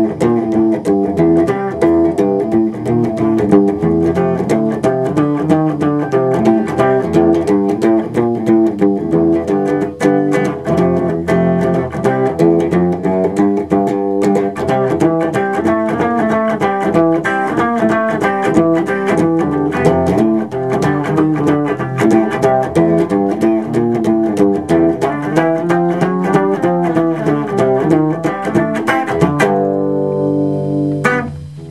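Guitar playing a blues backing in C: a steady rhythm of picked notes over a low bass figure that repeats about every two seconds, closing on a chord left ringing near the end.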